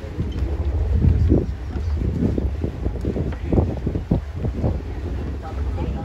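Wind buffeting the microphone: a low rumble with irregular gusts.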